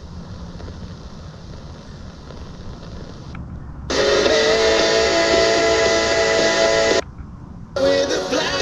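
FM broadcast audio from a Qodosen DX-286 portable radio as it steps from station to station. First comes a weak station, faint and hissy. The sound drops out for a moment, then a stronger station comes in with music of held, steady notes. Near the end it dips again as the radio tunes to the next frequency.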